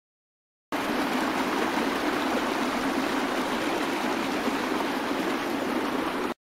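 Steady rush of flowing water, like a stream running, starting suddenly about a second in and cutting off suddenly near the end.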